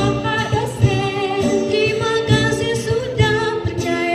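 A woman singing into a microphone over amplified instrumental accompaniment, with a regular low beat under the melody.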